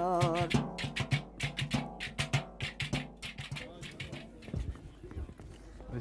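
Turkish folk dance music: the singing stops shortly after the start, and a steady quick drum beat carries on, growing fainter toward the end.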